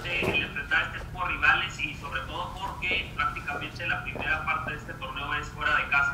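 A reporter's voice asking a question over a video call, heard through a speaker: continuous speech that sounds thin and telephone-like, with no high end.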